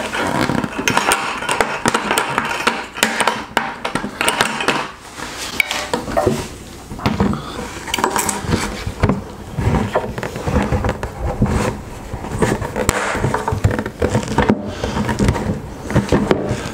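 Black plastic five-gallon bucket and its fittings being handled: repeated knocks, clicks and scrapes as hands work inside the bucket fitting a threaded part into a drilled hole.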